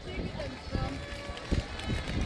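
Indistinct voices talking over general outdoor city street noise.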